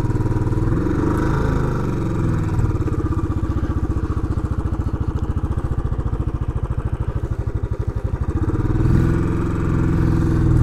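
Royal Enfield Classic 500's air-cooled single-cylinder engine pulling away at low revs with an even thumping exhaust beat. The revs rise briefly about a second in and again near the end as it picks up speed.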